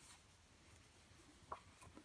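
Near silence: room tone, with two faint short clicks near the end.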